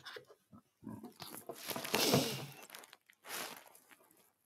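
A man's long, breathy, wordless vocal sound lasting about two seconds, followed by a shorter breath.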